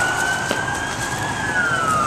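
Ambulance siren wailing: one slow rising-and-falling tone that climbs to its peak a little over a second in, then starts to fall.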